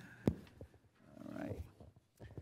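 A single sharp knock picked up by a desk microphone, then a faint chuckle and soft low bumps as papers are handled close to the microphone.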